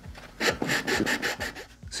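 Sanding stick rubbed quickly back and forth over glued sheet-styrene plastic, a rasping scrape of about six strokes a second. It is smoothing down the overlapping ridges at the glued joints.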